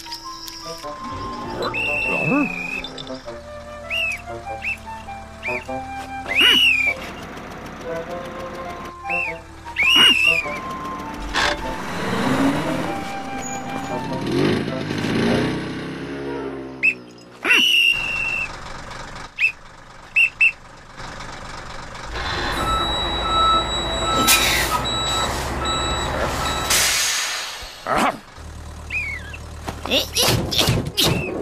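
Cartoon soundtrack: background music mixed with sound effects, including several short, high, rising whistle-like chirps. A denser, noisy stretch with a low rumble runs for several seconds in the latter part.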